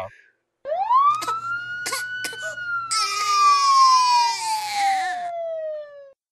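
A man imitating a siren and a baby crying at the same time with his voice. One long tone rises quickly, then slowly falls for several seconds, and a wavering, crying wail joins it from about three seconds in.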